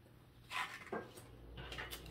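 Faint handling sounds of paper gift tags being moved and set down: two short rustles about half a second and a second in, then a soft rustle.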